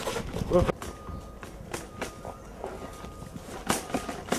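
Footsteps on a tarmac street with irregular knocks and rattles, a short bit of a voice just under a second in, and a sharp knock near the end.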